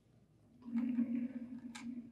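PASCO //code.Node Cart, a small plastic wheeled cart, rolling by hand across a tabletop: a steady low hum starts about half a second in, with a short click near the end.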